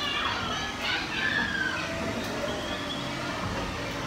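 Children's voices calling and chattering in the background over the steady noise of a moving amusement park ride.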